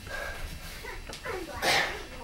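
A man breathes out hard in a short, loud hiss near the end, straining under a heavy kettlebell as he lowers into a Turkish get-up. Underneath, a faint indistinct voice rises and falls in pitch.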